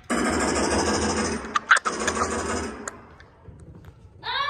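Laser tag blaster's electronic sound effect: a loud, rapid buzzing burst that starts suddenly, holds for about two and a half seconds with a sharp crack near the middle, then fades away.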